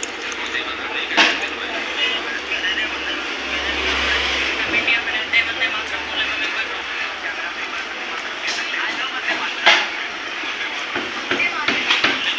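Tea water boiling in an electric kettle, a steady bubbling hiss, as milk is poured into it from a plastic bottle; a couple of short knocks, about a second in and near the ten-second mark.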